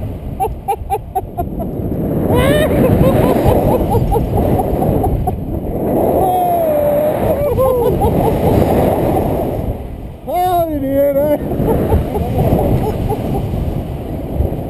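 Heavy wind rushing and buffeting over the camera microphone as a tandem paraglider swings through steep banked turns, with a few drawn-out vocal whoops from the riders.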